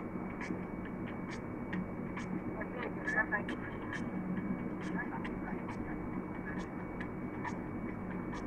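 Steady low hum of a moving vehicle heard from inside the cabin, with faint voices in the background and light ticks about twice a second.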